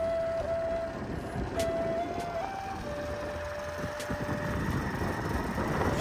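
Traditional music played on a flute, holding long single notes that break off about a second in and come back briefly, over a steady rushing noise that grows toward the end.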